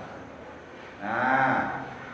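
A man's single drawn-out "ahh" about a second in, held for under a second with a slight rise and fall in pitch: a hesitation sound between phrases of a spoken lesson.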